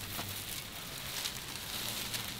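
Faint crinkling and rustling of the clear plastic wrap and carbon fiber fabric as a roll is rolled out across a table, over a steady low hum.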